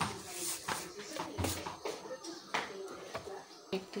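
Kitchen handling: a metal spoon and containers clicking and knocking lightly a few times while a spoonful of sugar is scooped out, with one duller thud about one and a half seconds in.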